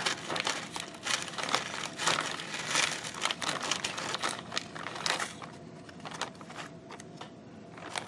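Clear plastic bag crinkling as hands press and rub it down over sand and shells inside, with the sand shifting against the plastic. The crackling is busy for about five seconds, then dies down to a quieter rustle.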